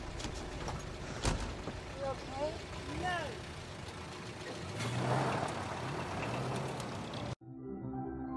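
A London black cab's door shuts with a single knock a little over a second in, then the cab's engine rises and it pulls away from the kerb. Near the end the street sound cuts off suddenly and soft ambient music takes over.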